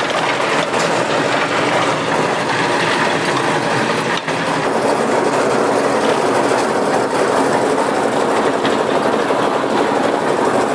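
A drum concrete mixer running steadily and loudly, its engine going as the turning drum tumbles the concrete mix of gravel, sand and cement.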